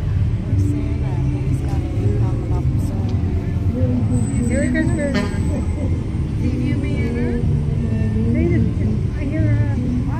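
Parade vehicles, a passenger van and then a fire department pickup truck, driving slowly past with a steady low engine rumble, under the chatter of nearby onlookers.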